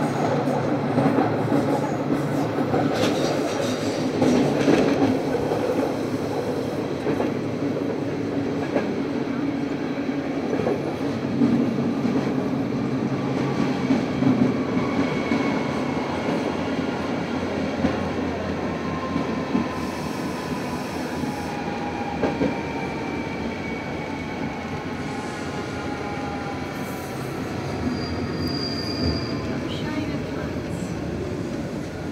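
Ride inside a Bernese Oberland Bahn electric train: steady rumble of wheels on the rails, with the motor whine sliding down in pitch as the train slows for its stop. A brief high squeal comes near the end.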